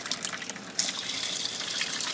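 A stream of water pouring from a pipe into a plastic bucket and splashing onto the water already inside as the hydroponic bucket is filled. The pour grows louder and hissier about a second in.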